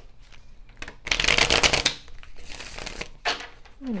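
A deck of tarot cards being shuffled by hand, in bursts: the longest, loudest one about a second in, a softer one after it and a short one near the end.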